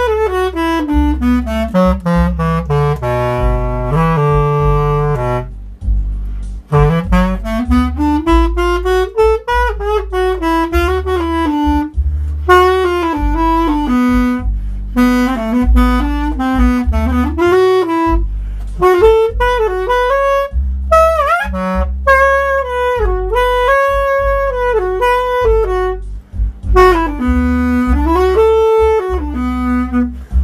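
Woodwind solo improvising a slow blues in jazz style, phrases with long smooth slides up and down in pitch and a couple of short breaks between them, over a backing track with a bass line.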